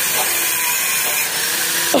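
Angle grinder disc grinding through a tack weld on a motorcycle exhaust muffler: a steady grinding hiss over a constant motor whine. The weld is being ground off so the muffler can be taken apart.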